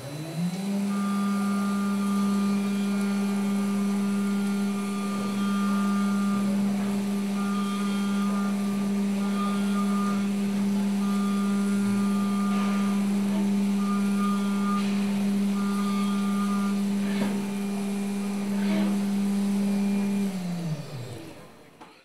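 Haas VF-2SS CNC vertical mill machining aluminum: the spindle winds up just after the start, runs at a steady high pitch while the end mill cuts under coolant spray, with a higher whine cutting in and out as the tool engages, then winds down near the end.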